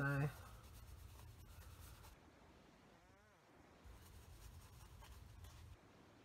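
Faint scratching and rubbing of a fine paintbrush worked over gold leaf on a thin cork clay piece, brushing loose flakes of leaf off.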